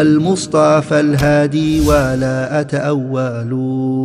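A man's voice chanting in long, held notes that slide between pitches.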